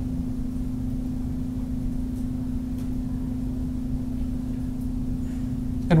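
Steady low background hum with a constant tone in it, unchanging throughout; no other sound stands out.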